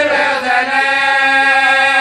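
Men's voices singing an Urdu marsiya (mourning elegy) together, a lead reciter with a supporting singer. They hold one long, steady note after a short break about half a second in.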